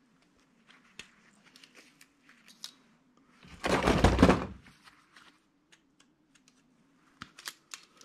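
Light clicks and taps of small metal and plastic parts being handled as a small electric motor assembly is taken apart by hand, with one louder clatter lasting about a second near the middle.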